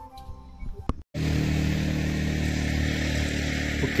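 A motorcycle engine running at a steady pitch. It cuts in abruptly about a second in, after a short stretch of flute music stops.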